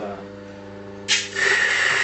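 Mahlkönig EK43 coffee grinder switched on about a second in, then running steadily with a high whine and hiss as it grinds a cupping sample into a cup.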